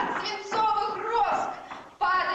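Speech only: a single voice reciting lines on stage in a hall.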